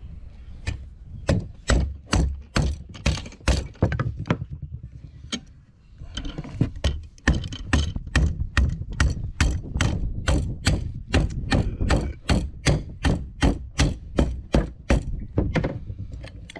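Rubber mallet striking a steel strap hinge clamped in a bench vise, bending it over: a long run of blows at about three a second, with a brief lull about five seconds in.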